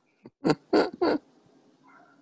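A man laughing: three short bursts of laughter in quick succession, in the first half of the stretch.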